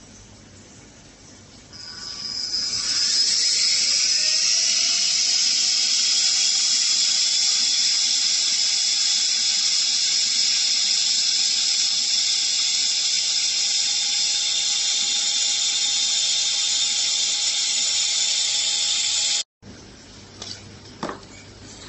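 Trapom Pro handheld vacuum pump's brushless motor switching on about two seconds in, its whine rising as it spins up, then running steadily with a high-pitched whine and rushing air while its nozzle is held in a bag's opening. The sound cuts off suddenly near the end.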